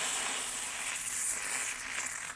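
Steam hissing steadily out of a pressure cooker's weight valve as the pressure vents after the lentils inside have cooked.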